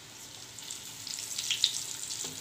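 Potato fritters (maakouda) sizzling and crackling as they shallow-fry in hot oil in a pan, with a sharp click about one and a half seconds in as a metal spoon turns them.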